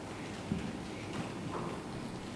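Quiet room tone with a few soft, short knocks, the first about half a second in.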